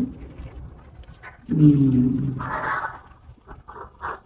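A low, drawn-out 'ừ' about a second and a half in, trailing off into a breathy exhale, with a few faint clicks near the end.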